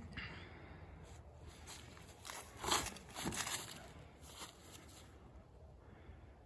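Faint rustling and crunching of feet on grass strewn with dry leaves as a disc golf forehand throw is made, loudest about halfway through.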